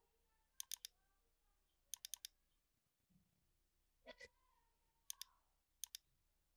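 Faint clicks of a computer mouse, in small clusters of two to four, over near silence.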